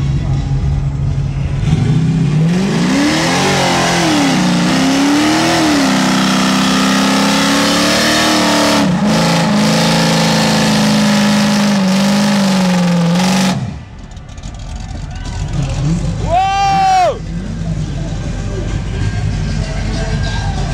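American V8 muscle car doing a burnout: the engine revs up and down, then is held at high revs for several seconds while the rear tyres spin and smoke, and cuts off abruptly about two-thirds of the way through. Near the end a brief tone rises and falls.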